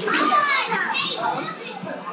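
Children shouting and squealing, loudest in the first second, then softer.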